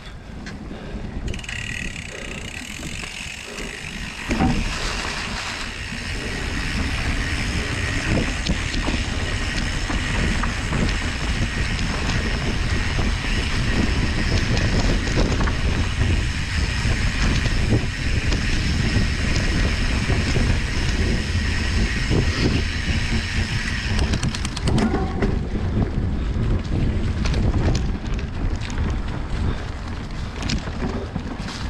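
Mountain bike rolling along a dirt forest trail, with tyre rumble and wind buffeting the microphone. A steady high whirring runs from about a second in until a few seconds before the end.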